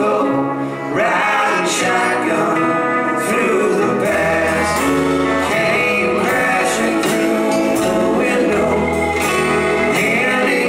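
Live band playing a country-rock song with electric and acoustic guitars, keyboard, bass and drums, low bass notes held twice in the middle and near the end.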